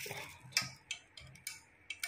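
Several light clicks and taps of a utensil knocking against a rice cooker's inner pot, irregular, about five in two seconds.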